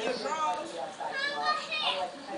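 A young child's high-pitched voice talking, with no clear words.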